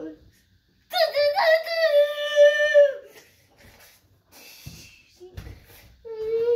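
A young boy's voice held on one long, nearly steady note for about two seconds, a drawn-out wordless cry. Later, softer rustling and a couple of low thumps.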